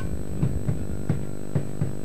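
Steady electrical mains hum with five short, soft low thumps spread irregularly through it.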